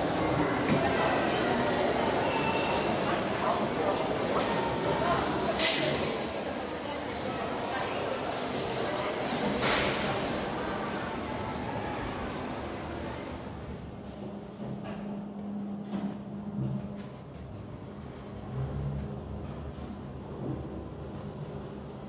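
Background chatter of voices, then two sharp knocks about four seconds apart from a KONE passenger elevator's doors and car. In the quieter second half, a low steady hum with a few soft thumps as the cab travels.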